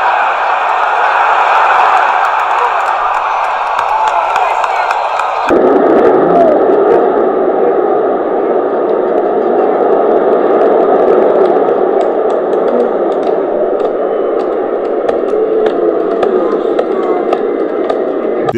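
Large stadium crowd cheering in a continuous loud roar of many voices. The sound abruptly changes character about five seconds in.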